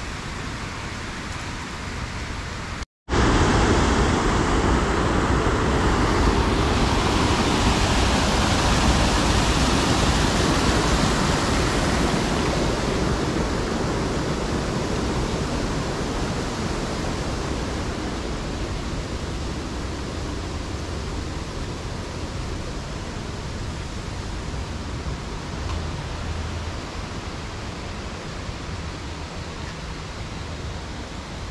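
Steady rushing of falling water, as from a small cascade, loudest just after a cut a few seconds in and slowly easing off. Before the cut there is a quieter, even background hum.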